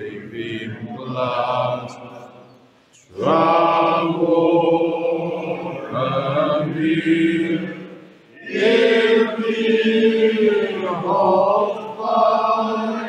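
A group of voices singing together in long, held phrases in a small church, with breaks about three seconds in and about eight seconds in.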